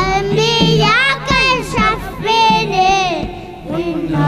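A child singing a Tamil devotional song, holding a long melismatic run with no clear words, the voice sliding up and down in quick ornaments.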